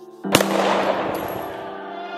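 A single gunshot: a sharp crack about a third of a second in, followed by a reverberating wash that fades over about a second and a half, over sustained music chords.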